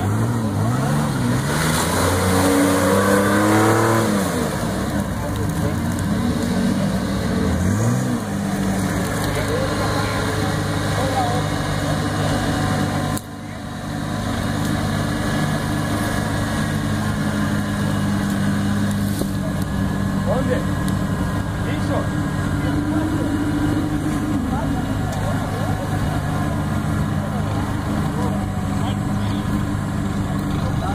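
An old flat-fender jeep's engine revving up and down several times as it pushes into a deep mud rut, then running at a steadier pitch as the jeep bogs down.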